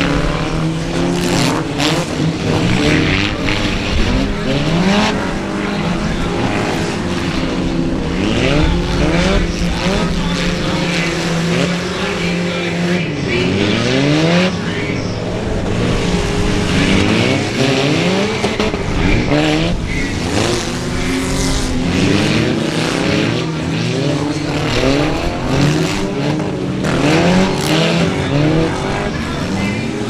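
Several stripped-out derby cars' engines revving hard all at once, their pitches climbing and falling over one another, with scattered knocks of cars hitting each other and tyres spinning in the mud.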